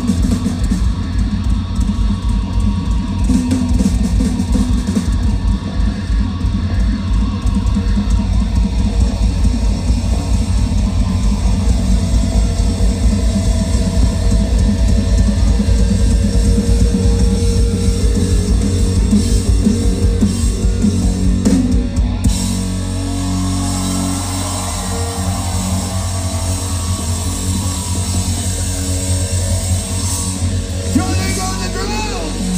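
Live rock band playing loud, with a drum kit pounding hard under guitars. About three quarters of the way through the drums drop out and held chords ring on.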